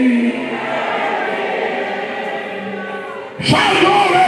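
Congregation voices singing together, with a man's held sung note through the microphone that breaks off just after the start. Near the end comes a sudden loud vocal outburst into the microphone.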